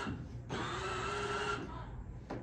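Small electric motor of a child's ride-on scooter whirring: a steady whine that starts about half a second in and stops after about a second.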